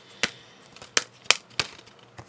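Hard plastic DVD case being handled and lifted: four sharp clicks and taps spread over about a second and a half.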